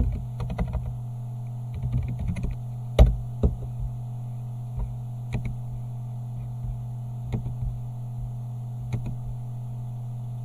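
Typing on a computer keyboard in two quick bursts, then single clicks every second or two, the loudest about three seconds in, over a steady low hum.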